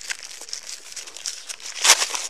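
Close crinkling and rustling of a paper tissue and bedding as blood is wiped away, handled right at the body camera's microphone, with a louder rustle near the end.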